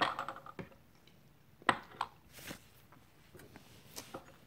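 Small porcelain tea cups and gaiwans being moved and set down on a wooden tea tray: a few light, separate clinks and taps, the sharpest one a little under two seconds in.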